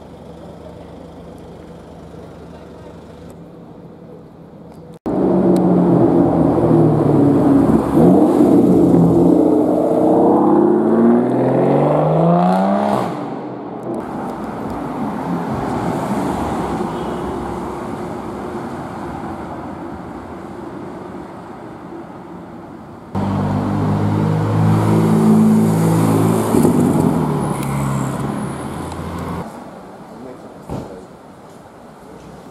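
Low steady hum, then a sudden loud car engine accelerating hard, its pitch climbing in steps through the gears before it fades. Near the end a second loud engine runs at a steady note for several seconds.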